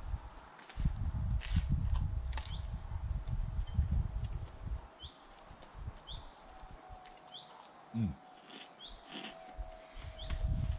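Chewing a bite of toasted croque monsieur: low, muffled chewing for about four seconds with a few crisp crunches, then quieter, and an appreciative "mm" near the end. A small bird repeats a short rising chirp about once a second.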